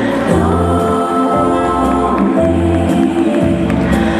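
Slow foxtrot dance music with sustained notes and a steady bass line, with singing voices.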